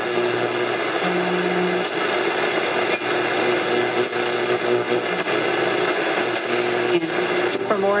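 Sony Mega Watchman's AM radio tuned between stations: a steady hiss of static with low humming whistle tones that shift as the dial moves, the sign of weak AM reception. Near the end the static gives way to a station's voice.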